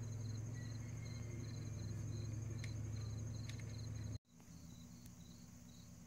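Insects chirping steadily outdoors: a rapid pulsed chirp and a higher continuous trill, over a low steady hum. About four seconds in, the sound cuts out for an instant and then carries on quieter.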